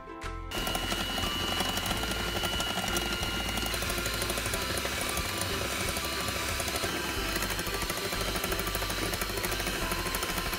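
Small handheld electric whisk running at speed with a thin high whine, whipping instant coffee, sugar and warm water in a glass bowl into a fluffy foam. It starts about half a second in and runs steadily.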